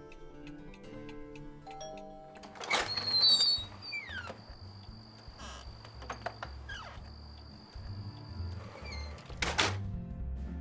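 Soft background music, with a door opening about three seconds in and a loud thunk near the end.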